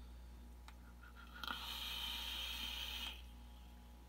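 A draw on a vape's rebuildable dripping atomizer: the coil firing and air pulled through it make a soft hiss lasting about a second and a half, which stops sharply. A faint click comes just before it.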